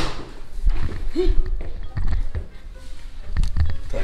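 Footsteps and low thuds of people moving about, with a short vocal sound about a second in and a few sharp clicks near the end, as a louvered cabinet door is handled.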